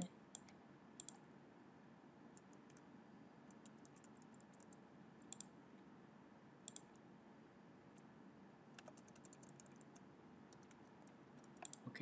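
Scattered, irregular clicks of a computer mouse and keyboard, faint, becoming more frequent near the end.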